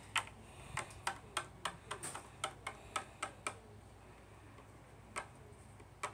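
Light taps of a small hard plastic toy on a wooden desktop: about a dozen in quick, uneven succession in the first three and a half seconds, then one more, and a last one near the end.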